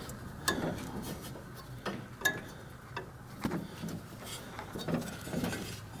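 Faint handling noise: a few scattered light clicks and taps, spaced irregularly, over a low steady hiss.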